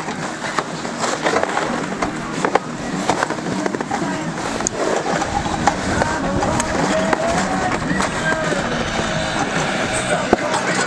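Clatter and scraping of snowboards and a chairlift chair arriving at the top station, with many short sharp knocks.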